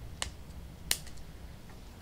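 Two sharp plastic clicks, the second louder, a little under a second apart, as a Carling rocker switch's flexible mounting wings are pressed in and the switch is worked loose from its mounting panel.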